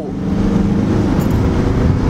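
Steady road and engine noise inside the cabin of a moving car: an even rumble with a faint low hum.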